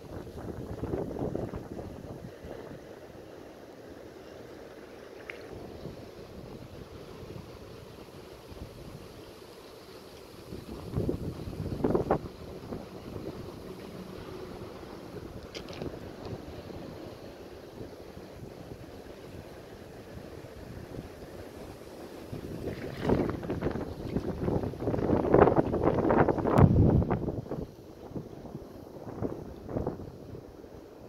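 Wind buffeting the microphone over a steady background rush, rising in louder bursts about eleven seconds in and again for several seconds near the end.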